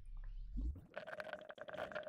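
Computer keyboard typing, sped up: a fast, dense run of key clicks starting about half a second in.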